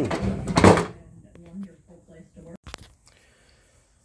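A man's voice finishing a short phrase, then faint low murmuring, and a single sharp click a little before three seconds in.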